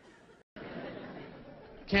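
Theatre audience murmuring between jokes, broken by a brief dead dropout about half a second in, where the sound is spliced. A man's voice starts speaking into a microphone near the end.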